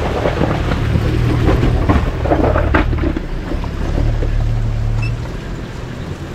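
Toyota Land Cruiser troop carrier's engine running under load as it drives out of a shallow rocky stream and over loose stones close by, with water splashing and rocks knocking and crunching under the tyres; one sharper knock a little under three seconds in.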